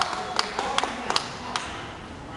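A few scattered handclaps from the crowd, about five sharp claps less than half a second apart in the middle, over the murmur of a large hall.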